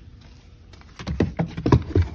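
Footsteps on a concrete floor: a quick run of sharp knocks and scuffs that starts about a second in.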